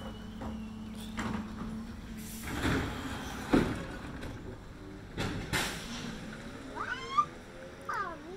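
Garbage truck working along the street: a steady engine hum, then several sharp bangs and short bursts of noise as it collects bins. Near the end comes a child's high-pitched squeal.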